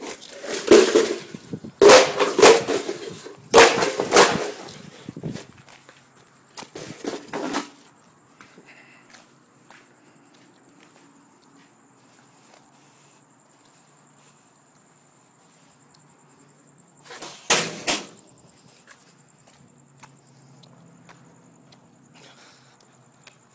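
Old computer hardware being smashed: a run of loud crashes and clatters in the first eight seconds, then one more crash after a long pause.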